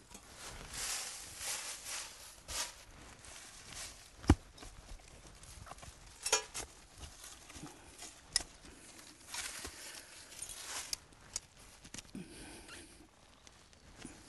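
Hand trowel digging and scraping in forest soil and dry leaves, with dirt scooped into a sifting screen, while a trap set is dug for a foothold trap. A single sharp knock about four seconds in.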